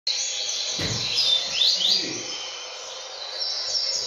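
Male double-collared seedeater (coleiro) singing in its cage: a fast, continuous, high-pitched warbling song with quick sweeping notes. There is a low thump a little under a second in.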